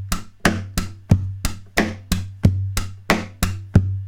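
Percussive acoustic guitar beat in a steady bass drum, hi-hat, snare drum, hi-hat pattern at about three hits a second. The hand strikes the soundboard for the bass drum, leaving a low boom after every fourth hit, and the strings click down against the end fret and sound-hole pickup for the hi-hat.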